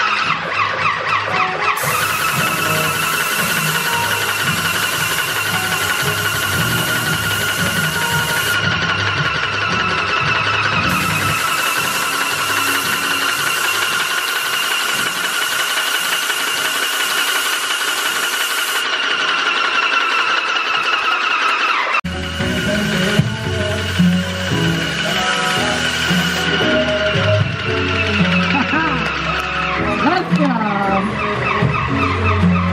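Hiss of an airless paint sprayer's gun atomising paint in two long bursts of several seconds each, with a steady high whine, over background music.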